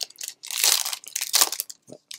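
Foil Pokémon booster-pack wrapper crinkling in a few bursts as it is pulled open and peeled off the stack of cards by hand.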